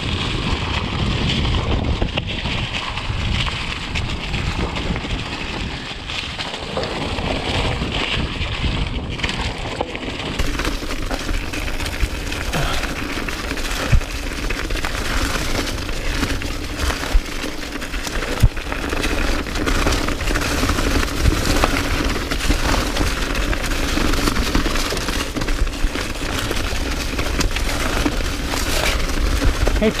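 Mountain bike descending a dry, leaf-covered forest trail: the tyres crackle steadily through fallen leaves, with wind on the camera microphone and a couple of sharp knocks as the bike hits roots or bumps.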